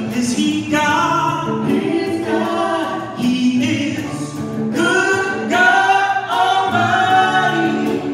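A church worship band playing a song: several voices singing together over guitar accompaniment.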